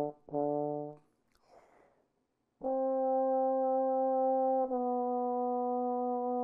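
Solo trombone: a short note, then a longer one ending about a second in, a brief breath, and after a short pause a long sustained higher note that steps down slightly to a new pitch about two seconds later.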